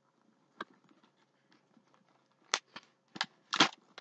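Small items clicking and knocking as they tumble out of a backpack being emptied: one faint click early on, then a cluster of sharper knocks in the second half.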